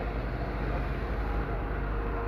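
Police helicopter flying overhead: a steady drone of rotor and engine.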